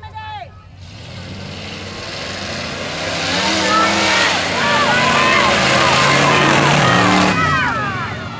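Mud-drag trucks, a Chevy and a Ford Bronco, launching and running flat out through a mud pit. The engine noise builds from about a second in, is loudest in the second half, and drops off sharply near the end as the run finishes.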